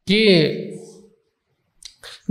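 A man's voice speaking close to a microphone draws out a single syllable. It then pauses, with a few short, faint clicks just before the next word.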